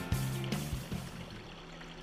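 Background music fading out in the first second, leaving the steady rush of water running down a Gold Hog multi-sluice, with a faint low hum under it.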